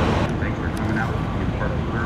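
Car engines running in the open with a steady low rumble, and faint voices in the background.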